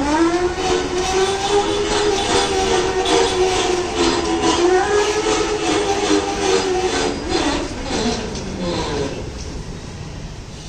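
Whine of a 1000-watt, 48-volt BLDC electric motor driving the converted van through reduction gearing. It rises in pitch as the van pulls away, holds steady, then drops and wavers as it slows near the end, with clicking over it.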